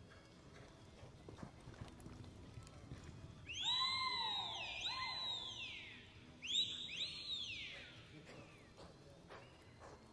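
A horse whinnying twice, loud and high. Each call is made of smooth arching rises and falls in pitch, the first starting about three and a half seconds in and the second about six and a half seconds in.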